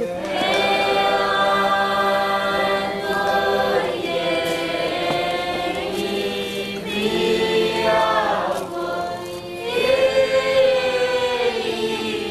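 A group of voices singing together in held notes, in harmony, in several phrases of a few seconds each.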